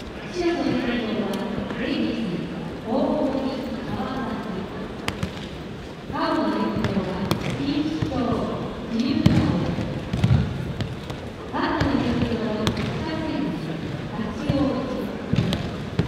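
Aikido practitioners' bodies thudding onto tatami mats as they take falls from throws, scattered irregular impacts. A voice speaks over them, echoing in the large hall.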